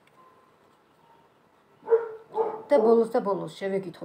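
A small dog barking a few short times, starting about two seconds in, mixed with a woman talking.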